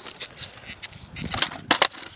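Skateboard popped and knocking on asphalt during a kickflip attempt: a few soft knocks, then two sharp clacks close together near the end as the wooden board comes down. The trick is not landed.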